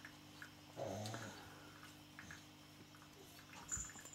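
Faint steady electric hum of a running Eheim 2075 canister filter's pump motor. A brief low sound comes about a second in.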